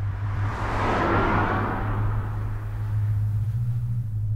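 A whoosh of tyre and wind noise from the Tesla Model S going past, swelling about a second in and slowly fading, with no engine note. Under it runs a steady low hum.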